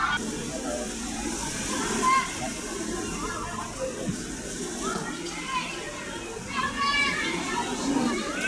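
Football players shouting and calling to each other across the pitch, short scattered calls over a steady hiss of falling rain, with wind rumbling on the microphone.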